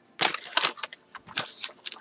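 Crinkling and rustling of a clear plastic bag and papers being handled by hand: irregular crackles in two short clusters.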